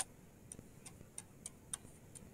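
Faint, light clicking: one sharper click at the very start, then small clicks about three times a second.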